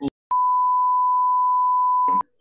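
Censor bleep: a single steady, pure beep tone held for about two seconds over speech, starting a fraction of a second in and cutting off abruptly.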